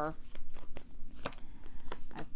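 Tarot cards being handled: a run of short, sharp card flicks and slaps, about five in two seconds, as cards are pulled from the deck and laid down.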